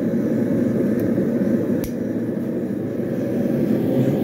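Steady roar of a propane burner heating the blade, with one sharp metallic tick about two seconds in.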